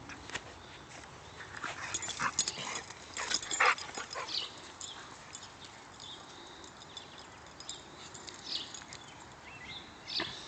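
A dog chewing on a wooden stick: a cluster of sharp cracks and crunches between about one and a half and four and a half seconds in, then a few fainter snaps.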